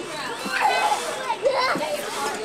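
Several young children's high-pitched voices calling out and chattering together, with no clear words.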